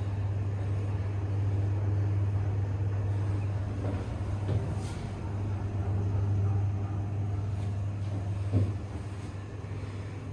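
Thyssenkrupp traction elevator car travelling down, heard from inside the car: a steady low hum and rumble of the ride, with one brief knock late on.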